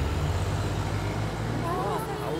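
Cartoon car driving sound effect: a steady low engine hum with street traffic noise. A faint voice comes in near the end.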